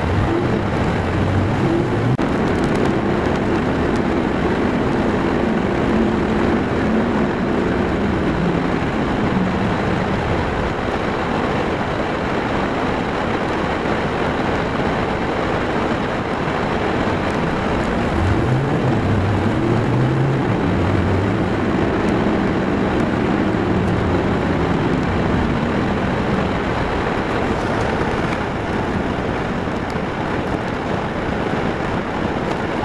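A car's engine and road noise heard from inside the cabin while driving. The engine note climbs as the car pulls away again about eighteen seconds in.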